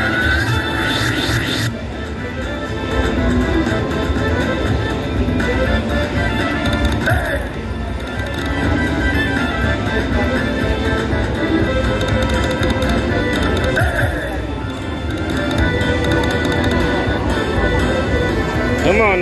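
Mariachi Party video slot machine playing its bonus-round music and sound effects: a continuous looping tune with short chiming flourishes about seven seconds in and again about fourteen seconds in.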